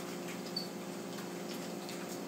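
Faint swishes of padded nunchaku spun through the air in a figure eight, over a steady low hum.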